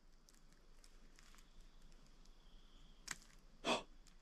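Near-quiet night woods with faint scattered ticks, then a sharp click about three seconds in and a brief, louder rustling scuff just after it.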